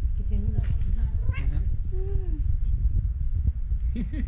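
Cat meowing: about three short meows in the first half, over a low steady rumble.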